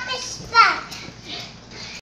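A young child's high-pitched voice: a held syllable at the start, then a short, steeply falling squeal about half a second in, followed by quieter vocal sounds.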